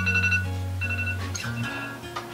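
A phone alarm's marimba-like chime tune, short high notes repeating every half second or so, over background music.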